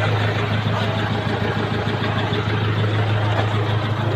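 A vehicle engine idling with a steady low hum under a constant noisy background.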